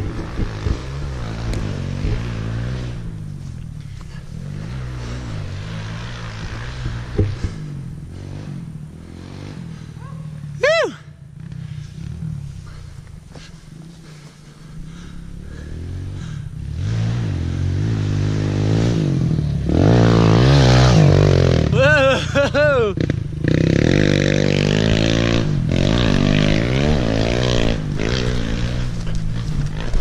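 Kawasaki KLX 140L pit bike's single-cylinder four-stroke engine, fitted with a new exhaust pipe, revving up and down as it is ridden through turns. There is one sharp rev and drop about a third of the way in and a quieter dip around the middle, then the engine runs harder and loudest about two-thirds through.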